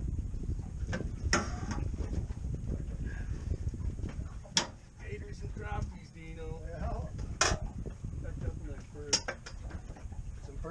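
Sharp knocks and clicks of a landing net and its handle being handled against an aluminium boat's rail while a fish is unhooked, about four loud strikes with lighter clatter between, over a low rumble.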